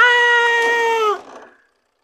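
A man's voice holding one long, high-pitched cry for about a second, dipping in pitch as it fades out.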